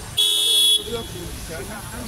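One short, high-pitched toot lasting about half a second, just after the start and the loudest sound here, followed by faint background voices.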